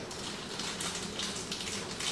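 Irregular crackly crunches of a Carolina Reaper hot chip being bitten and chewed.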